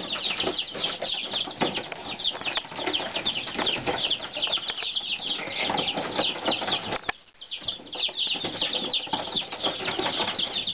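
A brood of baby chicks peeping continuously: many short, high, downward-sliding peeps overlapping, several a second, with a brief lull about seven seconds in.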